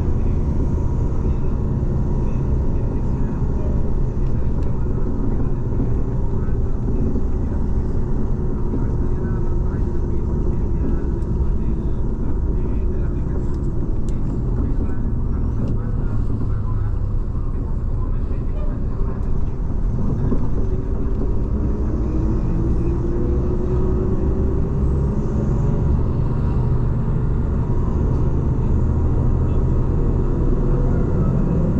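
Steady engine and road rumble heard from inside a moving vehicle. About two-thirds of the way in, the engine's pitch rises as it speeds up.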